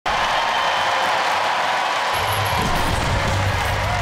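A studio crowd cheering and applauding over music, with a deep bass line coming in about two seconds in.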